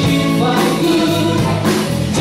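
Live rock band playing: electric guitars, bass guitar and drums, with a man singing into a microphone.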